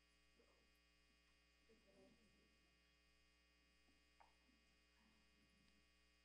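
Near silence: a faint steady electrical hum, with a few faint scattered room sounds.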